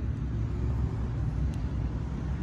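Steady low rumble of road traffic going past, with no distinct event standing out.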